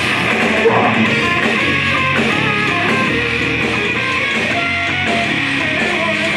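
A death metal band playing live, loud and steady, with electric guitar riffing to the fore over bass and drums.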